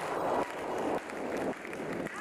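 Concert audience clapping along in unison, about two claps a second, after the song has ended.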